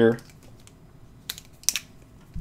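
Two short clicks about a second and a half in, from a felt-tip marker being handled against a sheet of paper, over faint room tone.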